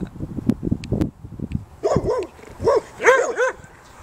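A dog barking in a quick run of about six short, high yipping barks in the second half.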